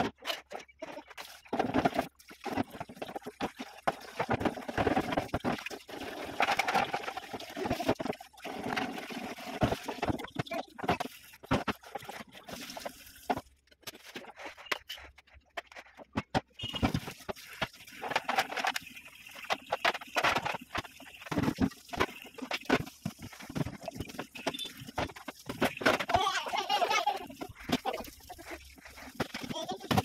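Refrigerator trays, bins and glass shelves being washed by hand at a steel sink: running tap water splashing, with many short knocks and clatters of plastic and glass being handled.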